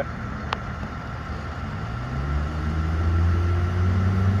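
Engine of a 2015 International TerraStar ambulance running, its pitch and level rising about two seconds in and then holding higher, as if it is being revved up to pull out. There is a single sharp click about half a second in.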